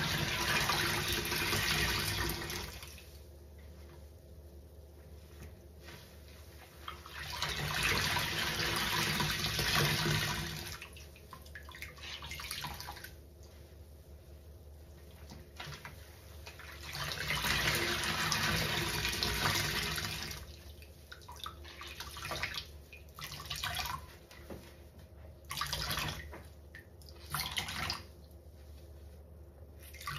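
Soapy water streaming and squelching out of sponges as they are squeezed and lifted in a sink of sudsy rinse water: three long gushes, then a run of shorter squeezes near the end.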